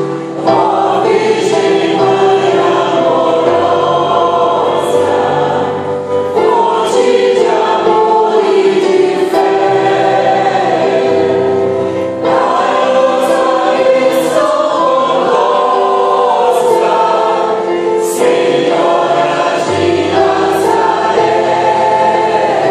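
Mixed choir of men and women singing a hymn in long sustained phrases, accompanied by a digital piano that holds low notes beneath the voices.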